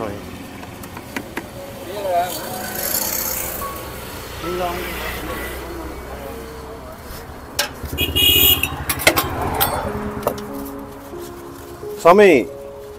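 Background voices of several people talking, with passing road traffic and a scattering of sharp clicks and clinks, most of them about two-thirds of the way through.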